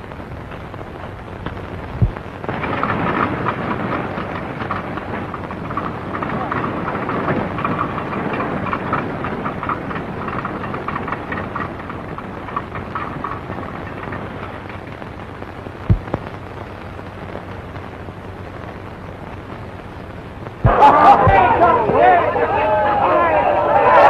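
Steady hiss and crackle of an early 1930s optical film soundtrack, with two sharp low pops. About a second before the end, a crowd's shouting and chatter breaks in loudly.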